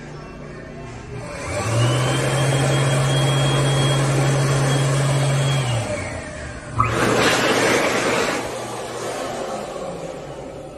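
Bobrick TrimDry and Columbia Vortex stainless hand dryers running one after the other. The first spins up about a second in with a rising whine and a steady hum, blows for about four seconds, then winds down with a falling whine. Near seven seconds the second starts abruptly with a click and blows for about a second and a half before tapering off.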